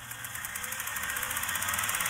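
A transition sound effect under a title card: a noisy swell with a fast, even flutter, rising steadily in loudness.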